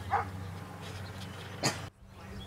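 Two short, sharp animal calls, like barks or yelps, about a second and a half apart, the second falling in pitch, over a steady low hum.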